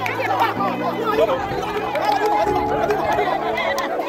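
Background music with held bass notes, under the lively chatter and calls of a crowd of people.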